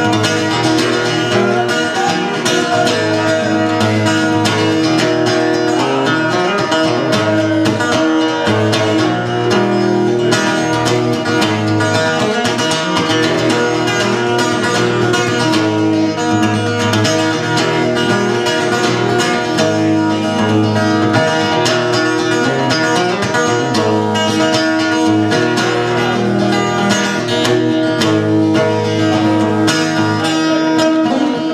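Solo cutaway acoustic-electric guitar played fast and hard, with rapid picked notes over low notes that keep ringing underneath like a drone. The playing is steady and loud throughout, with no singing.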